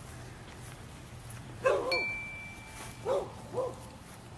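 Three short barks, like a dog's, the first the loudest and the last two half a second apart. A thin high ringing tone, like a small chime, sounds just after the first bark and dies away within about a second.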